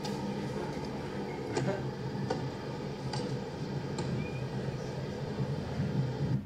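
Steady low background hum of room noise, with a few faint ticks.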